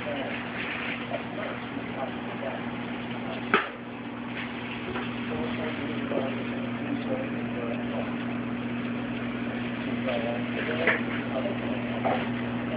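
Indistinct background voices over a steady low hum, with a sharp knock about three and a half seconds in and a smaller one near the end.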